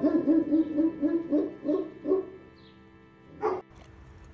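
Boxer barking in a quick run of about eight short barks, then one more bark near the end, over steady background music.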